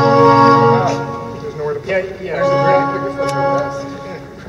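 Wurlitzer theatre pipe organ playing held, full chords, which change about two seconds in. People are talking over it.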